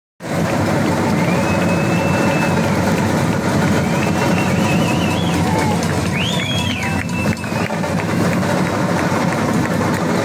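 A drum band of large bass drums and snare drums playing together at full volume. A few long, high tones that bend in pitch sound over the drumming.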